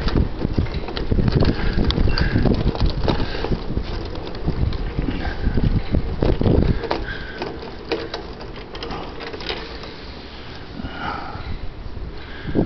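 Wind rumbling and buffeting on the microphone, with a few faint clicks.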